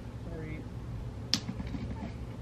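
Plastic screen-protector film being handled as its pull tab is tugged, with one sharp click a little past halfway and a few small ticks.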